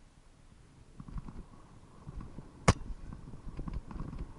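Footsteps crunching through dry leaf litter on a dirt trail, starting about a second in and going on unevenly, with one sharp crack about two and a half seconds in.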